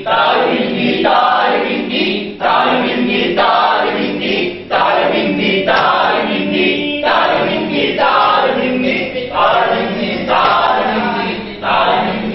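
A group of voices chanting or singing a short refrain over and over, one phrase about every second, like a choir.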